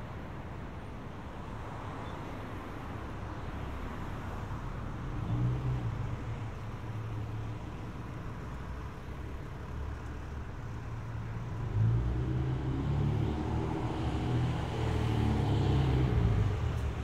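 Road traffic on a city street: cars and trucks passing with their engines running. It swells louder as vehicles go by about five seconds in and again over the last four seconds.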